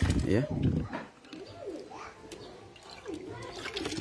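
Hands squeezing and stirring wet, blended spinach pulp in water in a plastic bucket, with soft splashing and sloshing. Faint cooing calls come and go in the background.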